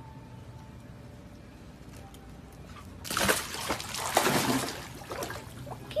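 A German Shepherd puppy entering a swimming pool: a burst of water splashing and sloshing starts about three seconds in and lasts about two seconds, with a few smaller sloshes after.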